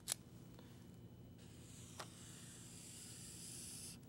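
Faint hiss of a felt-tip marker sliding over the writing surface as a long straight line is drawn, with a light tap at the start and another about two seconds in.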